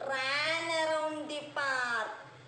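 A woman's voice drawn out in one long vocal call with a slowly falling pitch, followed near the end by a second, shorter call.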